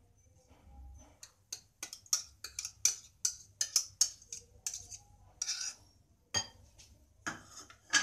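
Metal wire whisk scraping and clicking against bowls as thick curd is worked out of a plastic bowl into a glass bowl of semolina: a quick, uneven run of scrapes and clinks, then a louder clink near the end.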